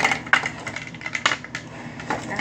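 A quick string of light clicks and clatters from small hard objects being handled, with a couple of sharper knocks near the start and another cluster a little past a second in.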